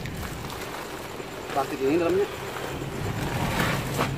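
Plastic rice sacks rustling and shifting as they are packed into the back of a car, over a steady low hum. A voice speaks briefly in the background around the middle.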